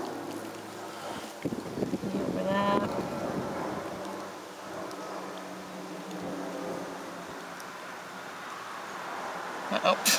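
Quiet rustling of gloved hands handling a bird's feathers, under a steady low hum, with a brief voice-like sound about two and a half seconds in.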